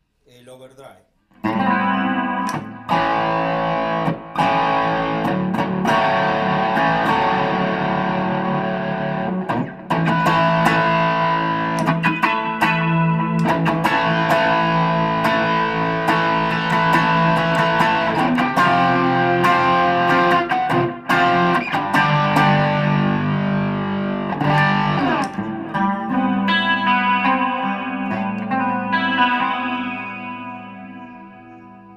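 Electric guitar (a Gibson Les Paul Studio) played through the pedalboard into a Fender Supersonic's Bassman channel and a 2x12 cabinet, starting about a second and a half in. A continuous picked passage with a few brief gaps, dying away near the end.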